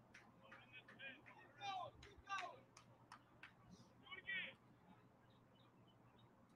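Faint distant voices calling out a few times, some falling in pitch, over scattered light clicks.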